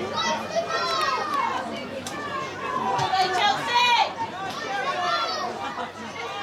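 Football spectators' voices, mostly children's high-pitched shouts and calls from the crowd, loudest about three to four seconds in.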